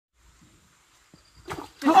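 Quiet at first, then a man's voice calling out loudly near the end.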